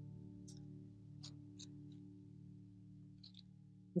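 Faint background music of sustained guitar-like notes, fading out. A few soft clicks of a spoon scraping seeds from a spaghetti squash come through.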